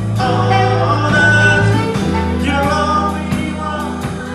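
Live gospel worship music with singing, played by a small band of electric bass, keyboard, saxophone and drums; the bass moves to a lower note about two seconds in.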